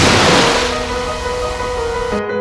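Ocean surf, a wash of breaking waves loudest at first and then easing off, over soft music with held notes.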